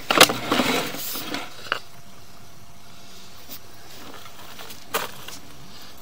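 Sewer inspection camera and its push cable rattling and scraping as the camera is pulled up out of the plastic cleanout pipe, clattery for about the first second and a half. Then a faint steady hiss with a few isolated clicks.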